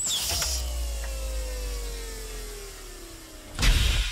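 Sound effect of a heavy steel vault door unlocking and swinging open. It starts with a sharp hiss, then a long metallic creak slides slowly down in pitch over a low rumble, and a loud short burst comes about three and a half seconds in.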